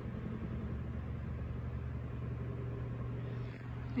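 Steady low machine hum with no change in level or pitch.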